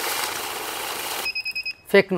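Electric bill counter feeding a stack of banknotes, a steady rapid whirr of rollers and riffling paper. After a little over a second it stops and gives a short run of high alarm beeps as the machine halts with an error.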